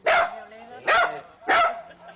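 Small dog barking three times, sharp high yaps at a cat facing it.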